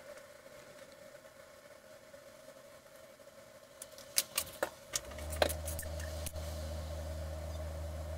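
A few sharp taps and clicks, then a steady low electrical hum starts about five seconds in, over a faint steady whine.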